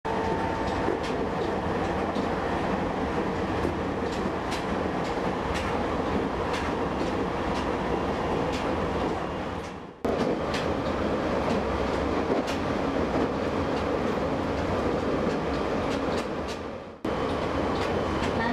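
Running noise inside a moving passenger train car, steady rumble with the wheels clicking over rail joints about once a second. The sound briefly fades out twice, near the middle and near the end.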